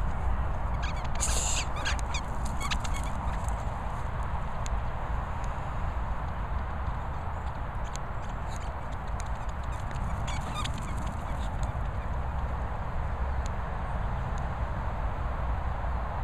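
A dog's rubber squeaky toy squeaking as the dog bites it: a quick run of squeaks about a second in, then scattered fainter squeaks later, over a steady low rumble.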